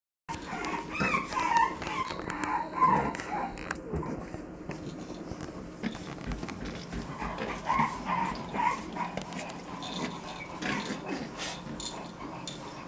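Puppies play-fighting over plush toys, giving short high-pitched yips and small growls, busiest in the first three seconds and again around eight seconds in.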